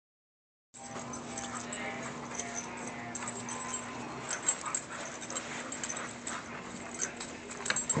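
Dogs playing rough together, making short dog noises amid scuffling, over a steady low hum; one sharper, louder sound about four and a half seconds in.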